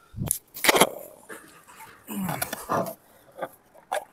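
Sharp clicks and knocks from a Western Digital 3.5-inch desktop hard drive's metal case being picked up and handled on a tabletop, the loudest in the first second. In the middle a short wavering, pitched whine-like sound follows.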